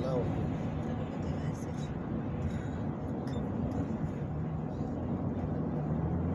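Steady road and engine noise heard from inside a car cabin at freeway speed, a low, even rumble with no sudden events.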